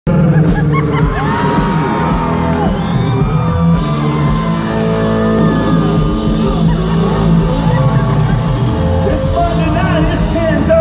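Live country band playing loudly, heard from the midst of the crowd, with a singer's voice and fans yelling and whooping over the music.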